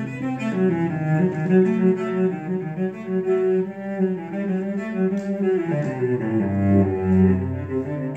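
Solo cello bowed in a slow melody of sustained notes, dropping to low notes about six seconds in.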